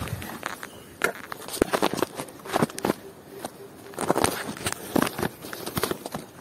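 Irregular crunches and knocks of a phone being handled and set down among dry, crumbly dirt clods.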